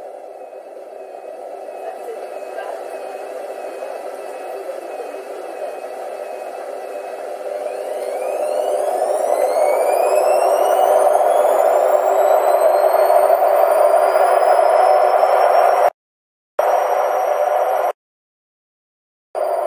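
Hotpoint WMA34 washing machine speeding up into a spin: the drum's rushing noise grows louder, and from about halfway through a motor whine rises steadily in pitch. The sound cuts off abruptly for a moment near the end.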